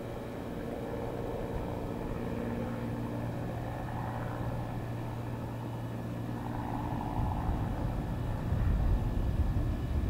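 Britten-Norman BN-2 Islander's twin propeller engines droning steadily as the aircraft climbs away after takeoff. A low rumble builds from about seven seconds in.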